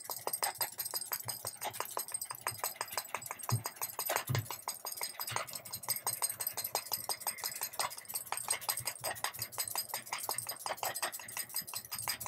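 Metal bracelets on a wrist clinking quickly and lightly, several clinks a second, as the hand sweeps rapidly back and forth over the resin pieces.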